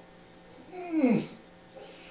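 A man's short whimpering moan of pain through closed lips, falling in pitch, about a second in, as he pulls a needle and thread through his lips to sew them shut; breath hisses with it.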